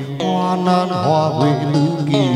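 Chầu văn ritual music: a singer's voice bending and wavering in pitch over sustained instrumental accompaniment, the music that accompanies a hầu đồng mediumship ritual.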